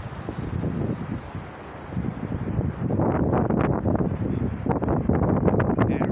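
Wind buffeting a phone's microphone over the low rumble of city street traffic, getting louder and rougher from about halfway through.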